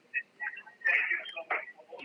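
Brief speech over a telephone line, a few short words or sounds about a second in.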